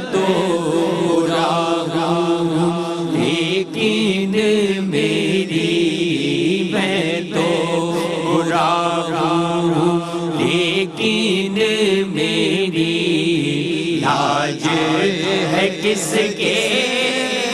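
Male voice singing a naat, an Urdu devotional song, in long drawn-out melodic lines over a steady held drone.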